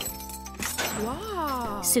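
A homemade key turning in a padlock on the cell bars with a light click that means the lock has opened, over background music.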